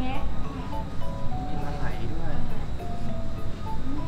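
Voices mixed with a melodic tune of held, steady notes.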